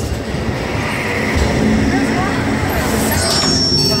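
Test Track ride vehicle rolling along its track, a steady noisy rumble, with faint voices and ride music over it.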